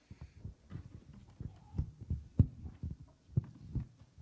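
Microphone handling noise at a lectern: a run of dull, irregular thumps and rustles, with the loudest knocks about two and a half seconds in and again shortly before the end.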